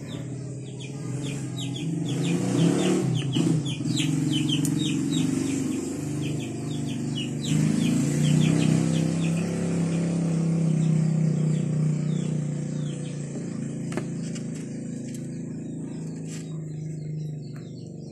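A bird chirping in a quick run of short falling notes for the first half, over a steady low hum that swells around the middle and fades toward the end.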